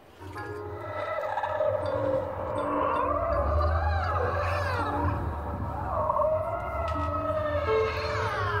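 Marching band playing its field show: the music swells up from a quiet moment into sustained low notes, with several sliding pitch glides that rise and fall.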